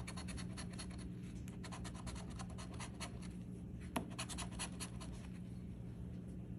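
A metal coin scraping the coating off a scratch-off lottery ticket in quick, repeated strokes, with one sharper click about four seconds in; the scratching stops about five seconds in.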